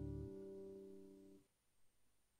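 Guitar holding the final chord of the piece and fading. Its lowest notes stop about a quarter second in, and the rest is cut off at about a second and a half.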